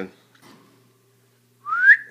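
A short whistle near the end that slides upward in pitch, about an octave.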